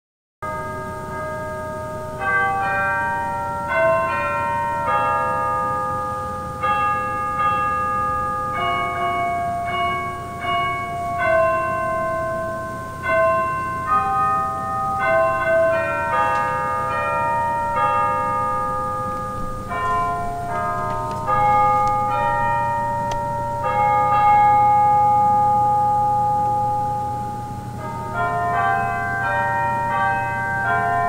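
Church chimes playing a slow melody, one struck bell note after another, each ringing on and overlapping the next.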